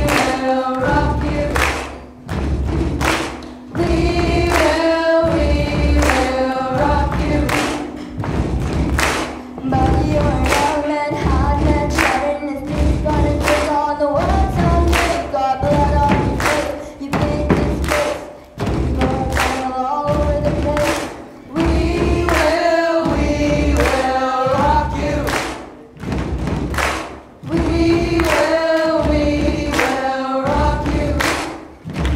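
Cast and choir singing together as a group over a steady beat of repeated thumps and hand claps.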